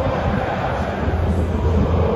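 Steady roar of a large football stadium crowd, with a deep rumble that grows stronger about halfway through.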